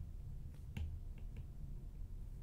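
Faint clicks of a stylus tapping a tablet's glass screen during handwriting: about four irregular taps over a low steady hum.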